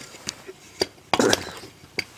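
A camera tripod being handled and set up: a few sharp, separate clicks and knocks, with a louder cluster a little past one second in.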